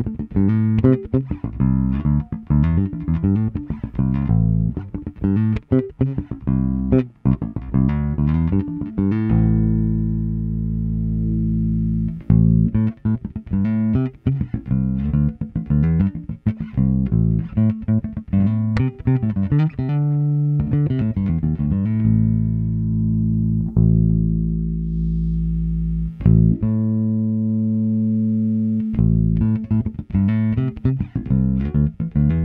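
Sire V3 electric jazz bass played fingerstyle through a Lusithand NFP filter-based preamp with both pickups on, improvising a line of quick plucked notes broken by a few long held notes.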